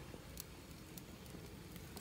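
Faint steady hiss with a few soft clicks from a lit gas grill as raw deer steaks are laid onto its metal grate.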